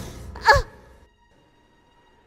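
A woman's voice, pitched as a little girl's, gives one short breathy exclamation about half a second in, its pitch dropping at the end. After about a second it goes nearly silent.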